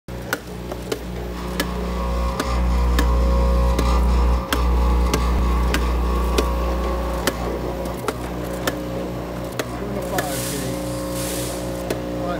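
Vibratory bowl feeder of a Batchmaster IV gate counter running with a steady electric hum, louder through the middle, while gummies are fed and counted. Sharp clicks come irregularly every half second to a second, and a brief rushing hiss comes near the end.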